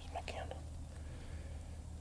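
Soft whispering for about the first half second, over a low steady hum.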